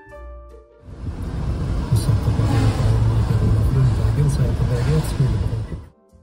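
Soft instrumental music gives way about a second in to the loud, steady rushing of a car driving, road and wind noise heard from inside the car, with a low wavering murmur under it. The car noise cuts off suddenly near the end.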